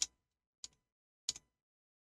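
Three short, sharp clicks about two-thirds of a second apart, the first the loudest, from operating the computer while editing.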